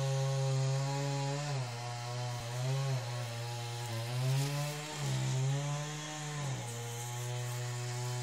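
A small engine running steadily, its pitch sagging and climbing back every second or two as if under changing load.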